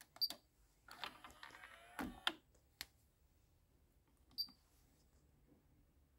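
Motorized front panel of a Carrozzeria FH-P606 car head unit moving into place: faint clicks just after the start, a short mechanical whir with clicks from about one to two and a half seconds in, and a single click at about four and a half seconds.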